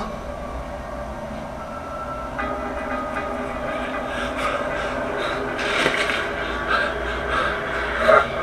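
Steady rumbling, hissing ambient sound from a horror skit's soundtrack, growing a little louder about two and a half seconds in.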